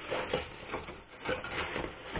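Cardboard box being handled and set down on a table: cardboard rubbing and scraping in several short rustles.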